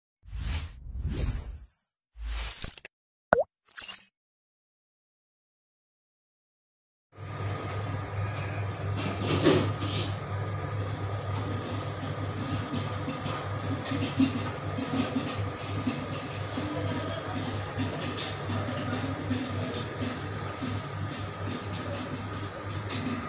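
A few short intro sound effects, one of them a sharp plop about three seconds in, then silence for a few seconds. After that comes steady background room noise with a low hum.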